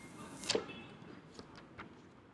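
Clear plastic protective film being peeled off a smartphone: one short, sharp ripping swish about half a second in, then a few faint ticks of plastic handling.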